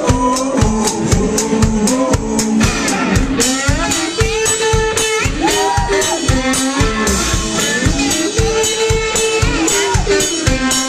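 Rock band playing live: drum kit keeping a steady, fast beat, with electric guitar and a singing voice.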